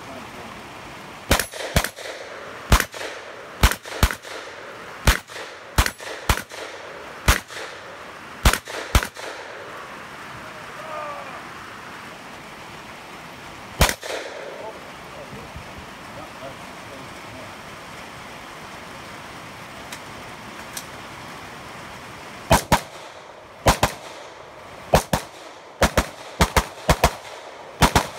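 Gunfire from a competitor shooting a 3-gun stage: a fast string of about eleven shots, most likely from a semi-automatic shotgun, then a single shot near the middle, then another quick string of about a dozen shots near the end.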